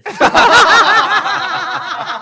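Several people laughing loudly together, a burst of quick repeated laughs that eases off a little toward the end.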